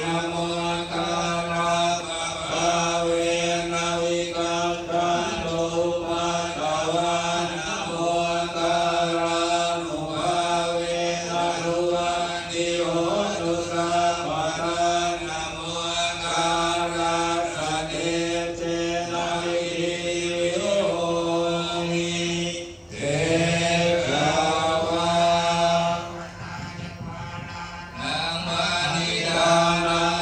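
Thai Buddhist monks chanting Pali verses in unison, a steady droning monotone of several voices. It breaks off briefly about three-quarters of the way through, goes quieter for a couple of seconds, then picks up again.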